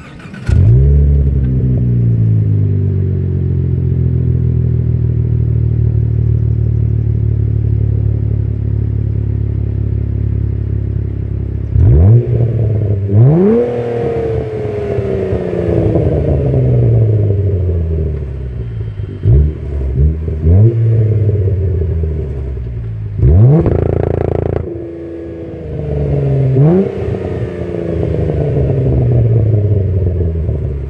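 Cadillac ATS-V twin-turbo 3.6-litre V6 through an aftermarket axle-back exhaust, firing up with a sudden loud flare that falls back to a steady idle. Later it is blipped in quick revs, once a longer held rev, each dropping back to idle.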